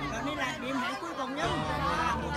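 A group of people chatting and talking over one another, several voices overlapping.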